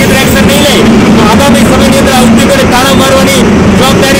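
A man speaking to camera over a loud, steady background noise.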